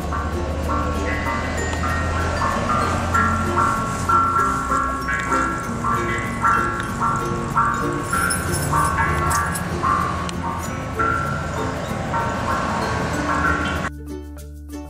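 Suikinkutsu, a buried water-koto jar under a stone tsukubai basin, giving out a continual string of short, irregular bell-like notes as drops fall into it, over a hiss of running water.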